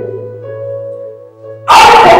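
Group singing in a church service dies away, leaving a quieter held chord of steady notes over a low hum. Loud singing voices come back in suddenly near the end.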